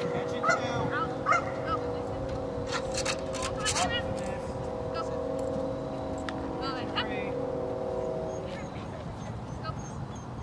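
A Vizsla yipping and whining in short, bending calls in the first couple of seconds, with a few more calls about seven seconds in. Under them is a steady hum that fades out near the end, and a few sharp clicks come about three seconds in.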